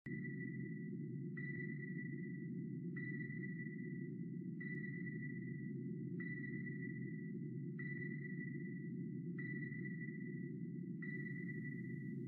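Submarine sonar ping sound effect: a high ping repeating about every 1.6 seconds, eight times, over a steady low underwater rumble.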